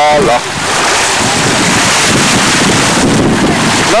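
Wind rushing over the camera's microphone, a loud steady noise mixed with the wash of shallow sea water, just after a short sung "la" at the start.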